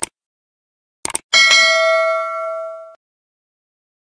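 Sound-effect mouse clicks, a single click and then a quick double click about a second in, followed by a bright notification-bell ding that rings out and fades over about a second and a half.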